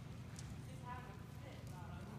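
Horse trotting on the soft dirt footing of an indoor arena, its hoofbeats light and regular, with faint voices talking in the background.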